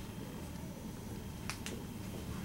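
A dry-erase marker tapping on a whiteboard while writing: two sharp taps a fraction of a second apart, about one and a half seconds in, over a low steady room hum.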